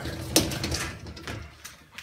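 The wire top basket of a Miele G 560 dishwasher rolling out on its runners: a rattling slide with one sharp knock about a third of a second in, dying away by about a second and a half, then a couple of light ticks.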